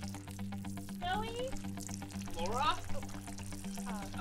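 Background music with steady held notes, over a faint crackly splatter of a liquid stream: a man urinating on the ground. Two short rising vocal sounds come about a second in and again near three seconds.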